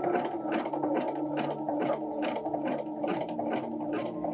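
Electric domestic sewing machine stitching a zigzag satin-stitch test line on scrap fabric, running steadily with a regular beat of about four needle strokes a second.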